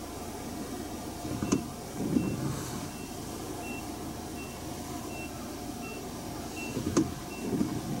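Low rumble of traffic heard from inside a car stopped beside a dump truck, with two sharp knocks. From about two seconds in, a faint high electronic beep repeats about every three-quarters of a second, the kind a vehicle's warning beeper makes.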